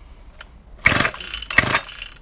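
Recoil starter cord of a small two-stroke garden machine pulled twice in quick succession, about a second in and again half a second later, the engine turning over against compression without firing. The owner reckons it a bit dicky at the top end.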